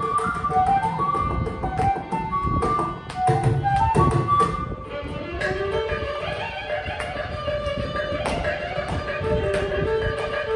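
Carnatic music: bamboo flute and violin playing a melodic line over mridangam and ghatam strokes. About halfway through the flute drops out and the violin carries the melody with the percussion.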